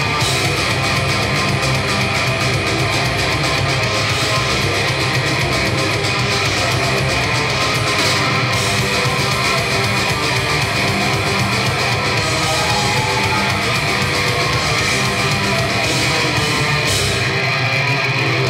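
Live blackened death metal band playing at full volume: distorted electric guitars and drums in a dense, unbroken wall of sound, heard from within the audience.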